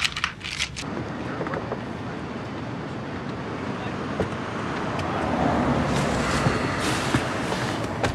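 A few brief clicks at the very start, then the steady rush of street traffic at night, heard from inside a parked car with its door open, swelling as a vehicle passes by a few seconds in.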